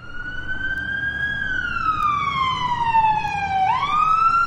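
Ambulance siren wailing over a low vehicle rumble, growing louder in the first second. Its pitch climbs slowly, falls for about two seconds, then sweeps back up near the end.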